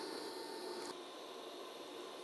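Faint steady hiss from a TIG welding torch as the weld is terminated; its higher part cuts off about a second in, leaving a softer hiss.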